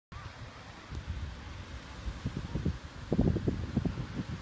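Wind buffeting the microphone in irregular low gusts, strongest about three seconds in.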